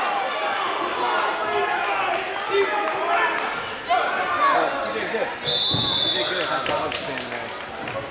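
Many voices talking over one another in a large gym, with a few dull thuds. About five and a half seconds in, a steady high tone sounds for about a second.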